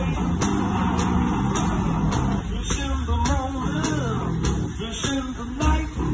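One-man band playing a blues number live: electric guitar over a steady drum beat of just under two strokes a second.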